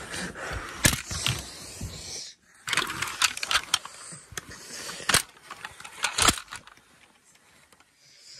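Handling noise from model toy cars and the phone being moved about over bedding: a series of sharp clicks and knocks with rustling between them. It dies down to faint rustling for the last second and a half.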